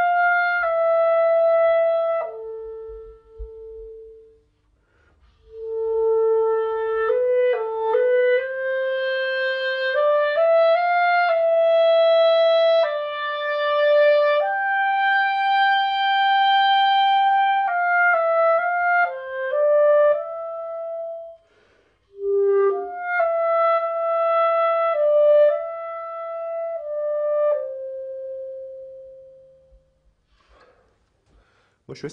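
Solo clarinet played through a Vandoren Masters mouthpiece: a lyrical melody in three phrases with short breaths between. The middle phrase climbs to a long held high note, and the last ends on a held note that fades away.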